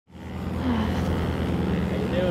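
Small piston aircraft engine running steadily, a low even drone that fades in at the start.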